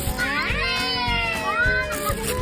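A toddler's drawn-out high-pitched squeal, rising at first and then slowly falling, with a short upward lift near the end, over background music with a steady beat.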